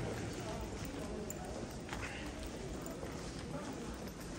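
Footsteps of people walking on a polished stone floor in a long hard-walled passageway, with a faint murmur of voices.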